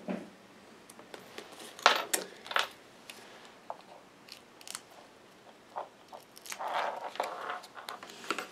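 Small crisp clicks and crinkles of fingers handling card stock, peeling the backing off Stampin' Dimensions foam adhesive squares and pressing the pieces together. A couple of sharper snaps come about two seconds in, and a longer rustle comes near the end.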